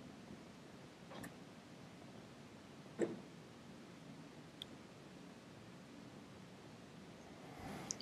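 Quiet room tone with a few faint, sparse clicks of typing on a laptop keyboard, and one sharper click about three seconds in.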